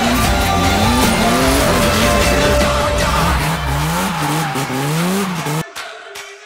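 BMW E36 drift car's engine revving up and down in quick swings, with tyre squeal, over loud background music. The car sound cuts off abruptly near the end, leaving only quieter music.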